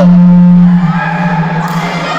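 A loud, low, steady tone that drops slightly in pitch about a second in and fades away near the end.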